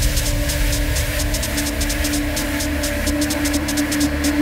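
Minimal techno mix: a held low tone over deep bass with a fast ticking hi-hat pattern, in a subdued stretch of the track.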